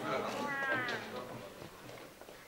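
A person's voice: a short drawn-out vocal sound that curves in pitch, such as a drawn-out exclamation, about half a second in, after which things grow quieter.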